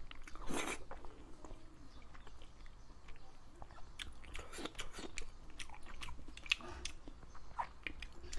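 Close-up mouth sounds of a person biting and chewing braised mushrooms: wet chewing with one louder noisy burst about half a second in and a run of sharp clicks and smacks from about four to seven seconds in.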